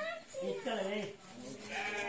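Voices in two short, pitched bursts that waver in pitch: one about half a second in, and another starting near the end.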